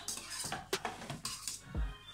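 Wooden spoon stirring thick béchamel sauce in a stainless steel pot, scraping along the pot with a few light knocks against it.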